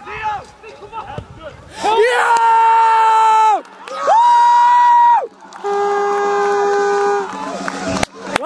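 A person close to the microphone celebrating a goal with three long, high-pitched held yells, each drawn out for about a second and a half, over faint crowd noise.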